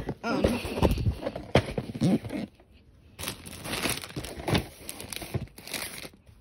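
A crinkly plastic LEGO polybag and cardboard set boxes being handled and moved about, in two spells of rustling and crinkling with a short quiet gap between them.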